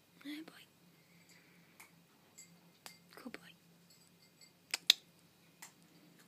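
Quiet room with two brief, soft voice-like sounds, one at the start and one about three seconds in, and scattered small sharp clicks, the loudest a pair just before five seconds.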